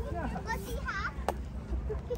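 Children's and other people's voices chattering at a distance over a steady low rumble from the stroller wheels rolling on the tarmac path, with one sharp click a little past halfway.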